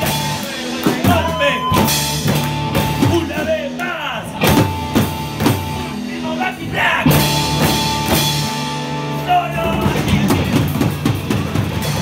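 A young rock band playing live: drum kit with electric guitars, held pitched notes over steady drum hits.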